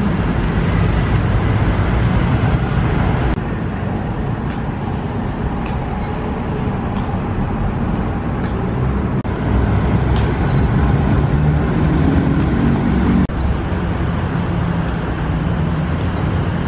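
Steady road traffic noise from a busy road: a continuous low rumble of engines and tyres, with the level shifting abruptly a few times.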